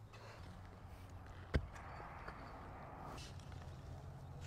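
A single sharp knock about a second and a half in, over a faint steady low hum.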